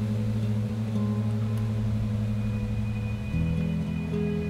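Background music: sustained low notes held steadily, moving to a new chord a little past three seconds in.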